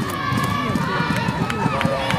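Many voices shouting and calling out at once, overlapping so that no single speaker stands out: the field chatter of a softball team and its bench.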